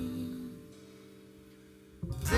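Live jazz band's held chord dying away over the first half second, leaving a faint steady electrical hum from the stage amplification.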